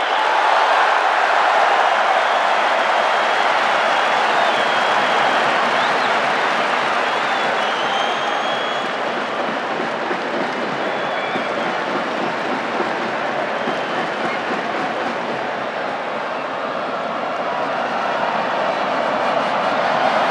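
A large stadium crowd making a steady, loud din, with a few thin whistles heard over it in the first half.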